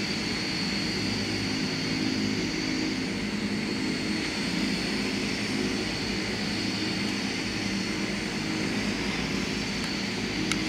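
De Havilland Canada Dash 8 turboprop engines running with the propellers turning: a steady drone with a thin high whine over it.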